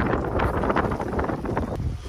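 Wind buffeting the microphone: a rough, steady rush heaviest in the low end, with faint scattered crackles.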